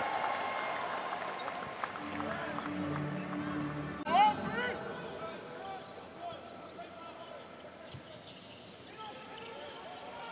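Basketball court sound from a game: the ball being dribbled on the floor over light arena noise, with a short, loud, pitched squeal about four seconds in.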